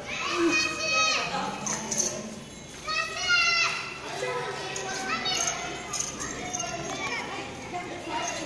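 Children's voices shouting and calling out, with three loud high-pitched calls standing out over a background of chatter.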